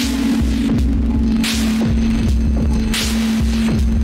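Eurorack modular synthesizer playing slow downtempo music: a steady humming drone over repeating low bass pulses, with a swelling noise hit about every second and a half.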